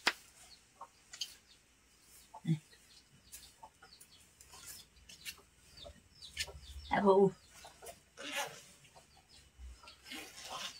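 Chickens clucking faintly now and then. About seven seconds in there is a short, louder vocal sound from a person.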